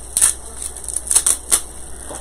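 A few short, crisp rustles and crinkles, about four in two seconds, as artificial greenery picks and their plastic packaging are handled.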